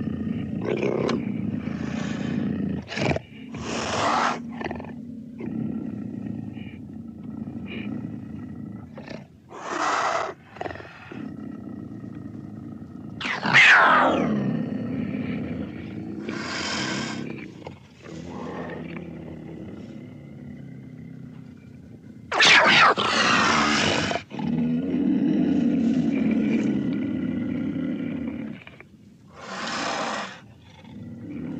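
Big-cat sound effects voicing a cartoon black panther: a low, steady growl under a series of separate roars and snarls. The loudest is a roar that falls in pitch about halfway through, and a long roar follows about three-quarters of the way in.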